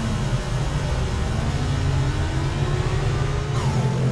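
Electronic sound design from a projection show's soundtrack: a dense, noisy, engine-like rumble over a strong low drone, with tones sliding slowly upward through it. Near the end a brighter hiss enters with a falling sweep.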